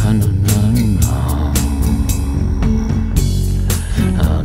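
Instrumental band music: a melodic guitar line with bending notes over bass guitar and a steady drum beat.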